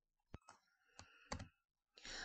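Near silence broken by about four faint, sharp computer clicks as the lecture slide is advanced.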